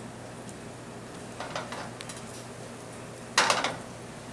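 Burger patties and French toast sizzling in stainless pans on a gas range, over a steady low hum. A few soft clinks come about a second and a half in, and near the end there is a brief, loud clatter of kitchenware.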